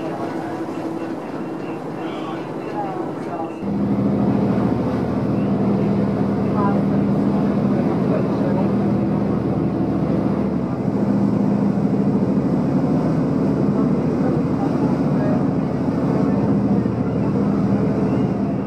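Passenger ferry's engines running with a steady low drone, heard from inside the boat's cabin. The drone starts abruptly about four seconds in, replacing a quieter steady hum.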